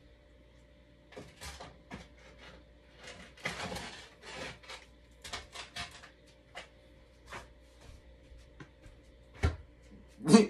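Someone rummaging for something low down, out of sight: scattered clicks, knocks and rustling, with a sharper knock about nine and a half seconds in, over a faint steady hum.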